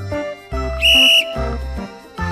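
A single short blast of a sports whistle about a second in, steady in pitch, signalling the start of a round of a reaction game. Background music with a steady beat plays throughout.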